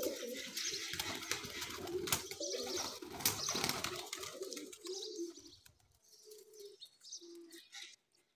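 Domestic pigeons cooing, with wings flapping during the first four seconds or so; after that, only short separate coos.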